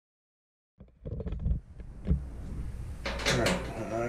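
After a brief silence, hand-tool handling on the dryer's sheet-metal back panel: a nut driver and screws clicking and knocking against the metal cabinet, with a low steady hum under it. A man's voice starts about three seconds in.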